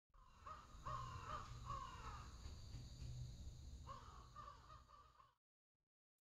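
Faint, harsh bird calls in two bursts of repeated calls, over a low hum, stopping about five seconds in.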